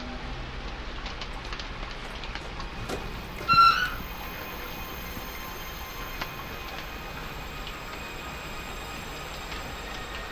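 Steady hiss of rain under a faint music bed, with one short, loud, high-pitched squeal about three and a half seconds in.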